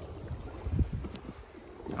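Uneven low wind rumble on the microphone, with a soft thump a little before halfway and a faint click just after.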